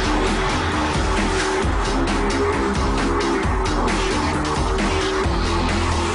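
Electronic dance music: a repeating bass line and a steady beat, with no vocals.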